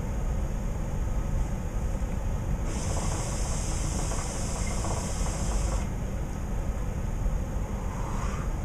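A draw on a hookah: a steady hiss of air pulled through the hose and bowl for about three seconds, starting about three seconds in, over a low steady hum.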